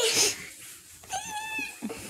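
A young girl's short, high-pitched wordless squeal about a second in, after a breathy rush of noise at the start.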